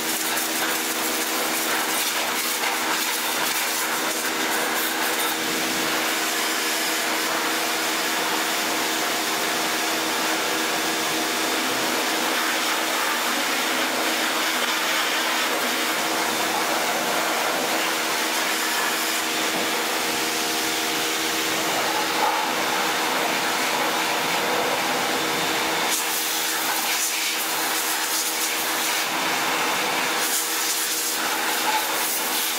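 CPT pressure washer running steadily at 120 bar, its motor and pump humming under the hiss of the water jet spraying onto a motorcycle's frame and rear wheel.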